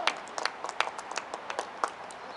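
Scattered hand clapping from a few people: sharp, uneven claps, several a second, with no steady rhythm.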